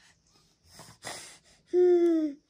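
A toddler breathing noisily in short bursts, then a loud, short voiced sound on one slightly falling note near the end.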